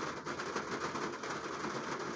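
Low, steady background noise with faint crackling ticks throughout, in a pause between spoken sentences.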